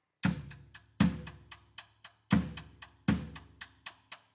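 Drum kit starting up a moment in: heavy bass-drum strokes roughly once a second, with lighter cymbal or snare strokes between them.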